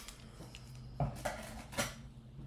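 Scissors snipping twice, once about a second in and once near the end, cutting off a tag.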